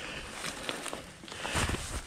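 Faint scuffing, rustling and a few light clicks of a mountain bike being handled on a rocky scrub trail, with a brief low rumble about three-quarters of the way in.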